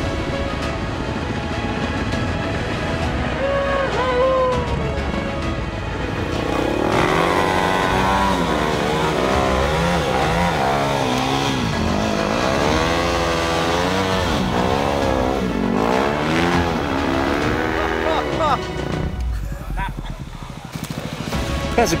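Dirt bike engines revving up and down hard over and over as the bikes climb a rough trail, growing stronger about seven seconds in and dropping back near the end, with music underneath.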